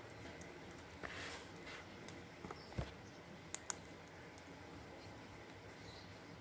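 Quiet desk-work sounds as pens are swapped: a brief rustle about a second in, a soft knock a little before the middle, then two sharp clicks in quick succession, with faint room noise between.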